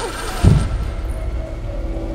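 Action-film sound design and score: a falling sweep ends in a sudden deep hit about half a second in, followed by a low held musical drone.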